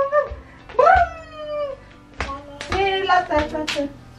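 A toddler's high-pitched wordless babbling and squealing, several short gliding calls one after another, with a few soft thumps between them.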